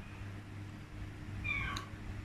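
A single short, high-pitched call that glides down, about one and a half seconds in, over a low steady hum.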